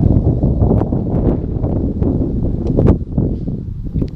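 Wind buffeting the camera's microphone, a loud, steady low rumble, with a couple of light handling knocks about a second in and near the end as the camera is moved.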